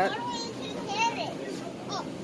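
A young child's high-pitched voice making short, unclear sounds or words, once at the start and again about a second in, over a steady low background hum.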